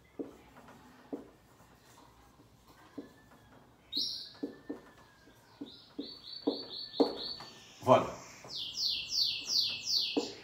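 Felt-tip marker writing on a whiteboard, with faint taps and strokes. Over it come high, short chirping notes: a lone one about four seconds in, a quick run of equal notes about six seconds in, and a louder run of falling notes near the end.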